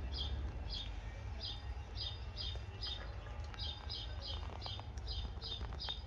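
A small bird chirping over and over: short high chirps at an even pace of about two to three a second, over a steady low hum.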